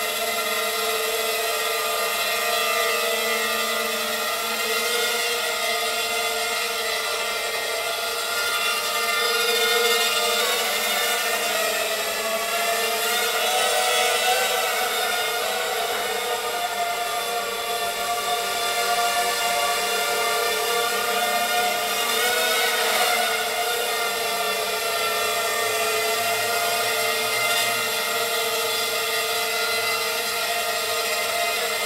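A 250-size racing quadcopter's four Emax MT2204 2300KV brushless motors with Gemfan 5x3 three-blade props, whining steadily in flight. The pitch wavers up and down a little as the throttle changes.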